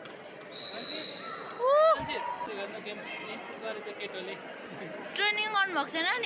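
Taekwondo sparring in a large hall: a loud shout about two seconds in, followed at once by a sharp thud of a kick landing, with more loud shouting near the end. A steady high-pitched beep sounds briefly before the shout.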